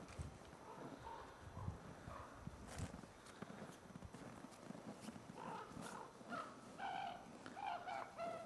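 A wolf licking and gnawing at ice on the snow, with soft scrapes and a few sharp clicks. From a little past halfway, a string of short, high-pitched whines.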